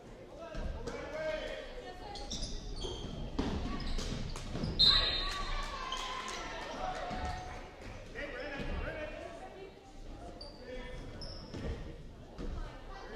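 Basketball bouncing on a hardwood gym floor during play, with players' and spectators' voices calling out in the echoing hall. A short high squeak about five seconds in is the loudest moment.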